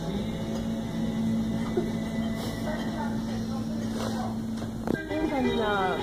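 A steady low hum for about five seconds that stops with a sharp knock, followed by a person's voice with quickly bending pitch near the end.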